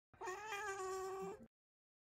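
A tabby cat meowing once: a single drawn-out meow lasting about a second and a half, holding a steady pitch, then stopping abruptly.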